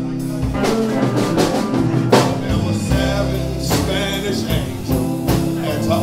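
Live blues band playing a slow song: electric guitar, electric bass and drum kit, with held bass notes under steady drum strokes.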